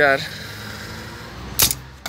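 A single sharp clack about one and a half seconds in, from a tool or engine part being handled at the timing-belt end of the engine, over a low steady background hiss.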